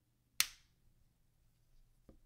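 A single sharp click as an acrylic watch crystal is pressed by thumb into the watch case and snaps into its seat.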